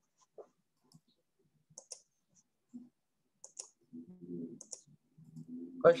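Light, sharp clicks at a computer, scattered irregularly and some in quick pairs, picked up by the call's microphone. A faint low murmur comes in near the end.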